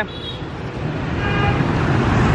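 Street traffic noise from passing motorbikes and cars, growing louder toward the end, with a brief faint horn toot about halfway through.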